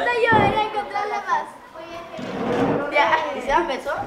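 Children's high-pitched voices talking and calling out, with no clear words, in two stretches: the first starts right away and the second builds up after a short lull in the middle.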